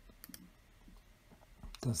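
A near-quiet pause with two faint, short clicks about a quarter second in. A voice starts speaking German near the end.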